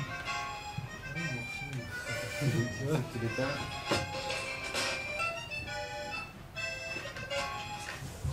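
Computer-generated instrument-like music from a sonification prototype driven by a tilting spirit level: several held notes sounding together, the notes shifting every fraction of a second as the level moves.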